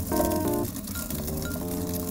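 Light background music of short held notes, a little louder in the first half-second. Beneath it, faint clinking of coffee beans being turned in a stone hand mill.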